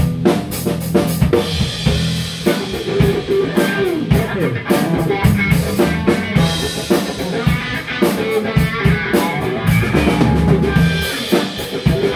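Live band of electric guitar, bass guitar and drum kit playing an instrumental groove, with the drums prominent and keeping a steady beat.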